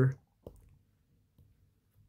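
A single short click about half a second in.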